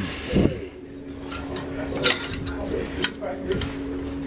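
Clothes hangers clicking and scraping along a metal clothing rail as garments are pushed along it, with a few sharp clicks in the second half.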